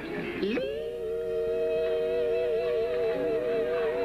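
Live gospel quartet music: a quick downward swoop about half a second in, then a chord held steady with a slow wavering vibrato.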